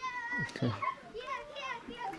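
Young children's high-pitched voices calling out in play: a long cry at the start, then several shorter cries that rise and fall in pitch.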